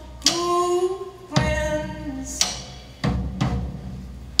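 Live song: a woman singing long held notes over a drum kit, with heavy drum and cymbal hits about once a second.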